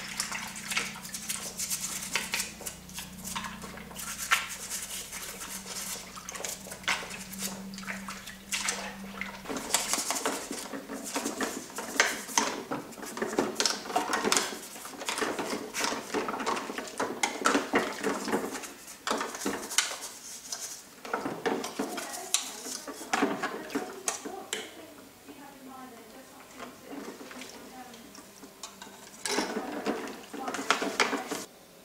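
Hard plastic parts of a vintage Kenner Slave One toy clattering and knocking against each other and the ceramic sink as they are washed and scrubbed with a toothbrush in soapy water, with splashing and sloshing. A low steady hum sounds under it and stops about ten seconds in.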